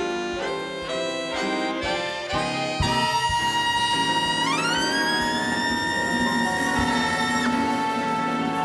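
Live big-band jazz with a brass section: short accented chord hits, then from about three seconds in a long held chord, over which a lead note slides up in pitch and is held high until near the end.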